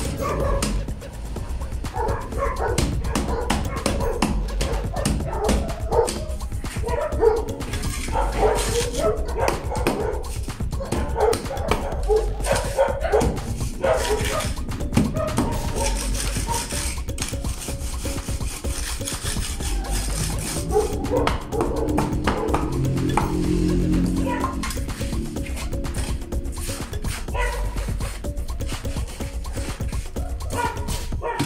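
Background music playing, with a dog barking.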